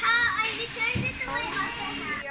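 Young children's high-pitched voices chattering and calling out, with no clear words.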